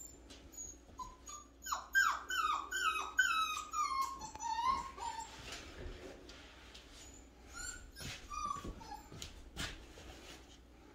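Goldendoodle puppy whining: a quick run of short, high whimpers, each falling in pitch, from about two to five seconds in, then a couple more near eight seconds.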